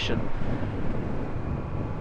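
Indian FTR 1200's V-twin engine running steadily at cruising speed, heard with wind noise on the microphone.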